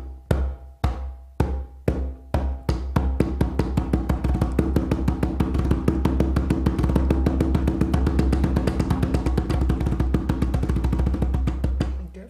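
Conga bass strokes, struck with flat hands in the middle of the head, alternating hands. They begin at about two strokes a second and speed up within a few seconds into a fast, even roll of deep strokes that stops just before the end.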